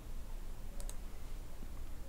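A computer mouse click about a second in, heard as two quick ticks close together (press and release), over a steady low hum.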